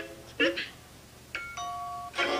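Short chime notes from a children's TV channel logo jingle: a brief pitched blip about half a second in, then a click and a held, doorbell-like chime near the end.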